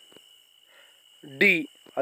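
A pause in speech with only a faint, steady high-pitched whine in the background. About one and a half seconds in, a voice briefly speaks.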